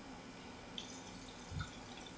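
Cold tap water running faintly from a faucet over the bite fork's impression compound. It starts just under a second in, with a soft low bump at about a second and a half.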